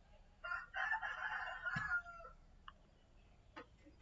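A faint bird call, about a second and a half long, ending on a falling note.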